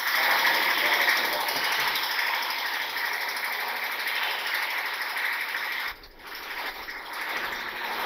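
Marker writing on a whiteboard: a continuous scratching that breaks off briefly about six seconds in, then resumes.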